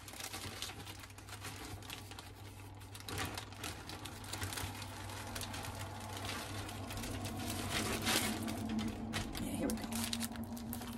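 Clear plastic packaging of a cross-stitch kit crinkling, with papers rustling, as hands rummage on a table and lift the kit out, an irregular crackling that gets busier toward the end.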